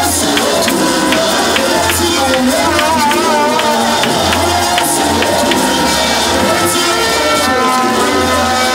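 Loud live worship music: a voice singing over bass and a steady tambourine-like beat.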